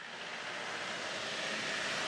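Steady outdoor ambient noise fading in: an even rushing hiss with no distinct events.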